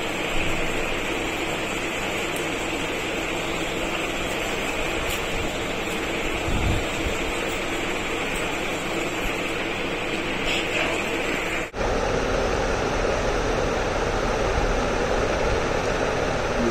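Steady background noise: a continuous hiss with a faint low hum, like running room machinery. About twelve seconds in it cuts off abruptly and a slightly louder steady noise with more low rumble takes over.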